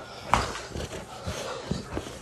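A Rottweiler gripping and tugging a jute bite pillow: scuffling and handling noise, with a sharp knock about a third of a second in and a few soft thumps after it.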